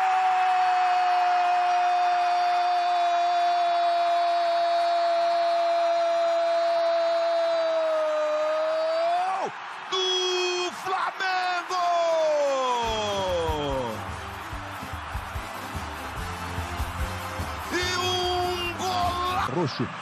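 A Brazilian TV football commentator's long drawn-out goal shout, a single held cry of about nine seconds that lifts slightly at its end, followed by shorter shouts. From about thirteen seconds in, music with a steady low beat comes in.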